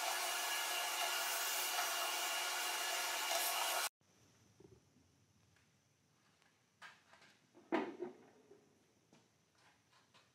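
Vacuum hose running steadily as it sucks sawdust off a bandsaw table, cutting off abruptly about four seconds in. A few faint knocks follow near the end.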